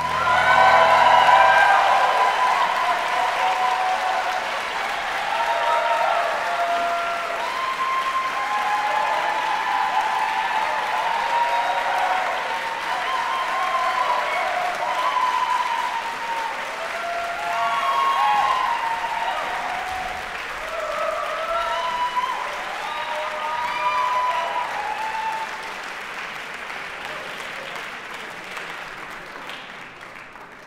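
Concert-hall audience applauding at the end of an aria, with voices calling out over the clapping. The applause fades away near the end.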